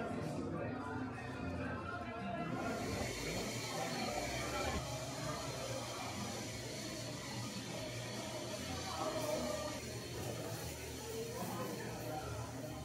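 Busy café room tone: many people talking at once under background music. A steady high hiss comes in about three seconds in and carries on.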